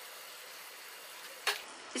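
Sugar syrup simmering faintly in a pan on a low flame, with one sharp click about one and a half seconds in.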